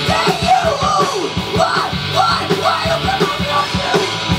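Live rock band playing: a male vocalist sings into a microphone over electric guitars, bass and a drum kit keeping a steady beat.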